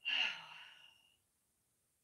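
A woman's sigh: one breathy exhale, falling in pitch and fading out over about a second.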